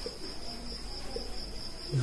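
A cricket's steady high-pitched trill, unbroken throughout, with a few faint soft sounds of a marker writing on a whiteboard.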